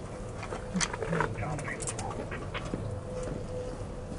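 Indistinct shouting from several men at a distance, in short scattered calls, over a faint steady hum.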